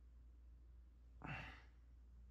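Near silence with a steady low hum, broken a little past a second in by one short sigh from a person.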